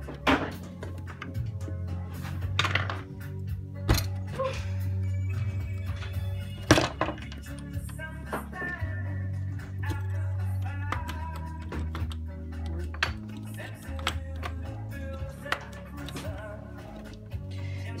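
Background music playing, with a few sharp knocks and clinks as pieces of stained glass are fitted into lead came on a wooden workbench; the sharpest knock comes about seven seconds in.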